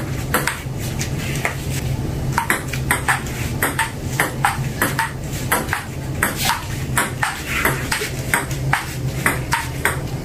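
Table tennis rally: a plastic ping pong ball clicking off the paddles and bouncing on the table, a sharp click roughly every half second with a short break about two seconds in. A steady low hum runs underneath.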